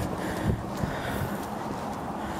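Footsteps walking on a concrete sidewalk, a few soft knocks among them, over a steady hiss of wind on the microphone.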